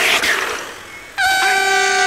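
A sudden whoosh sound effect that fades away over about a second, then a steady horn-like tone that starts about a second in and holds.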